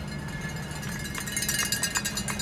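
Low, steady hum of a car moving slowly, heard from inside the cabin. About a second in, a rapid run of sharp rattling clicks joins it.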